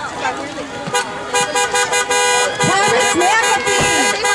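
Car horn honking in a run of repeated blasts that starts about a second in, with voices shouting and cheering over it.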